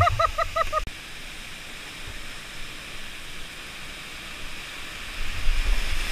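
Steady rush of a whitewater creek and waterfall. It opens with a person's quick string of high-pitched laughing hoots that breaks off within the first second; near the end the water grows louder, with splashing and a low rumble as the kayak moves into the rapid.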